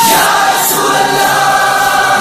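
Naat music interlude: a choir of voices holding one long, steady chord.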